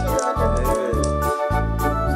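Background music: an electronic keyboard tune over a steady bass beat of about two notes a second, with light ticking percussion.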